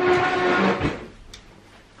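A person slurping a drink from a mug, a noisy sip lasting under a second, after which the room goes quiet.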